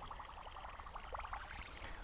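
Faint sounds of a lure retrieve from a canoe: a fishing reel being cranked, with soft water noise.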